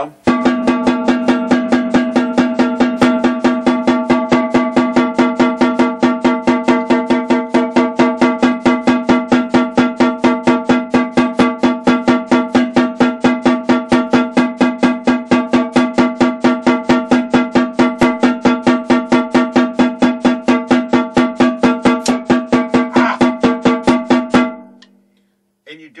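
Snare drum played in a long run of even single strokes, hands alternating right-left, at a steady tempo with every stroke at the same loudness, the head ringing with a clear pitch. The run stops about a second and a half before the end.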